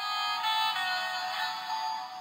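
Battery-operated animated Santa figurine playing an electronic melody through its small speaker, starting abruptly.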